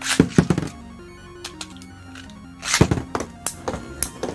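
Two Metal Fight Beyblade spinning tops launched into a metal stadium: a quick burst of clattering clicks as they hit the floor, then another cluster of sharp metal clashes as the tops strike each other about three seconds in, over background music.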